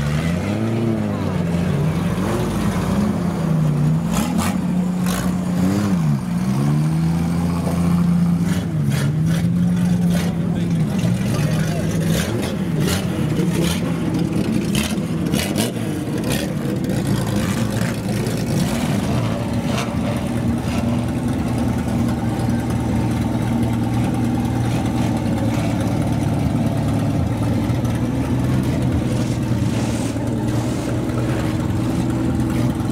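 Banger racing cars' engines being revved, the pitch swinging up and down with the throttle. A run of sharp cracks comes between about four and sixteen seconds in. After that the engines settle to a steady idle.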